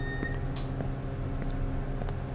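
Elevator beep, a single high steady tone that ends in the first half second, followed by the steady low hum of the elevator cabin with a few faint ticks.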